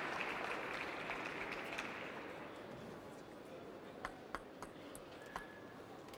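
Crowd applause in the arena fading out over the first couple of seconds, then a few sharp clicks of a table tennis ball bouncing: three in quick succession about four seconds in and one more near the end.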